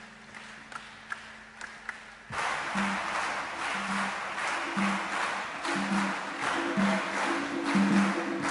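Audience applause breaks out suddenly about two seconds in, after a quiet stretch of a few soft, sparse percussion taps. A low note of music repeats roughly once a second underneath the clapping.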